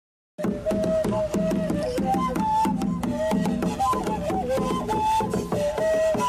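Traditional hand drums and flutes playing: a flute melody over a steady beat of drum strikes. It starts suddenly about half a second in, after a moment of silence.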